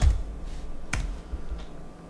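One sharp click on a Chromebook's keyboard or trackpad about a second in, submitting a Google search, over a faint low hum.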